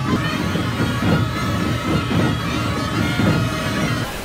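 Tsambouna, the Greek island bagpipe, playing a tune, with a long held high note over a rhythmic beat.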